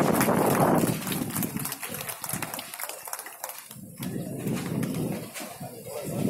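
Gusty wind on the microphone mixed with a large cloth flag flapping on a tall pole. The gusts are strong for about the first second, ease off, and pick up again about four seconds in.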